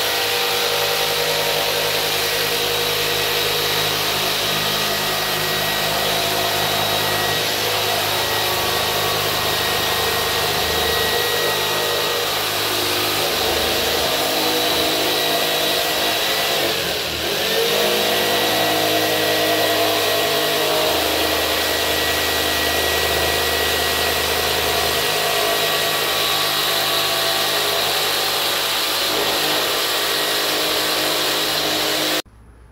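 Corded Skil jigsaw cutting through the plastic top of a 55-gallon drum, its motor running steadily. The motor briefly slows and then picks up speed again about halfway through.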